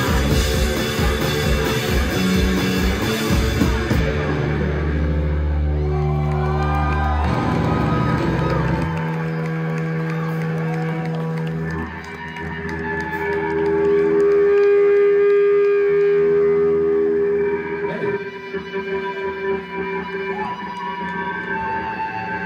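Live rock trio of electric guitar, bass and drums ending a song. The drums stop about four seconds in, and held guitar and bass notes ring on, sustaining and slowly dying away.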